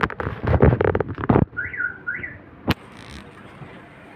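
A quick run of clattering knocks and rattles for about a second and a half, then two short whistled notes that each rise and fall, and one sharp click.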